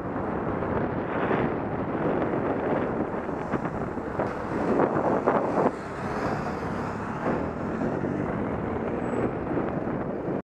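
Wind rushing over the microphone of a cyclist's camera while riding in traffic, with the running engines and tyres of the cars around it; the rush grows stronger and gustier in the middle, then drops back about six seconds in.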